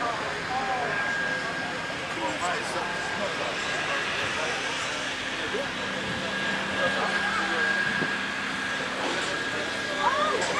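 Outdoor background: faint distant voices over a steady hiss, with a thin, steady high whine running through it.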